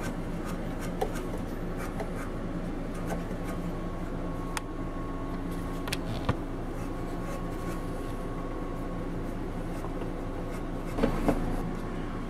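Steel wool scrubbing the brass switch contacts on the end of an air compressor's electric motor to clean them: a soft, uneven scratching with small ticks, over a steady low background hum.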